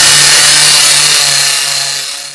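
Electric palm sander running loudly against a weathered wooden fence board: a steady, dense hiss of sandpaper on wood over a low, even motor hum.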